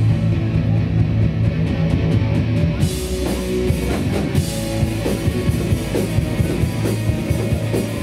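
Hardcore punk band playing live, with distorted electric guitar and a pounding drum kit.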